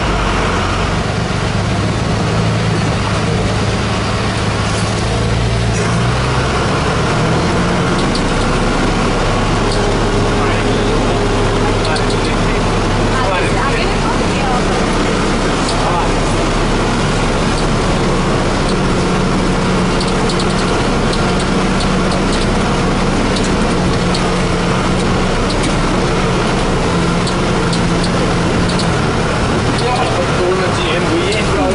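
Engine of a heavy vehicle heard from inside its cab, running at low speed over a rough, rocky track, with its note shifting about six seconds in and scattered rattles and clicks throughout.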